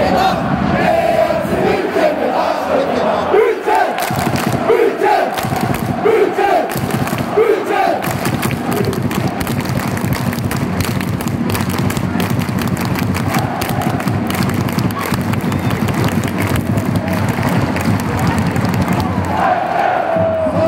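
Ice hockey arena crowd chanting together for roughly the first eight seconds, then a loud, steady crowd roar as play goes on.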